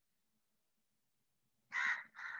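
A bird gives a short harsh call near the end, the start of a series of calls about half a second apart; before it, near silence.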